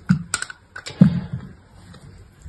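Thin, brittle pieces of soap being snapped and crumbled between the fingers: a quick series of crisp cracks, the two loudest about a tenth of a second and a second in.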